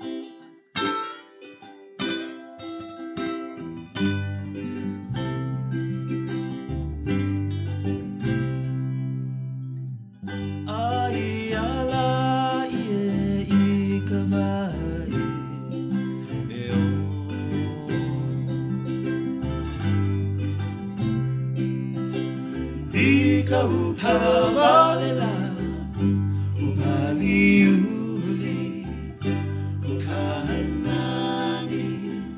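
Hawaiian acoustic band music: a ukulele picks the opening notes alone, then a bass guitar comes in with a steady pattern about four seconds in. Guitar and ukuleles fill out the accompaniment, and a singing voice enters about a third of the way through.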